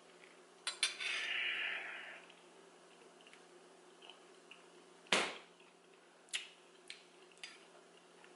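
Metal spoon clinking against a ceramic bowl of granola cereal: a handful of sharp clinks, the loudest about five seconds in, with a rough scrape lasting about a second near the start.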